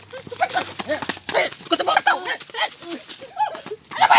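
Short, excited shouts and yells that rise and fall in pitch, with a quick run of sharp knocks underneath.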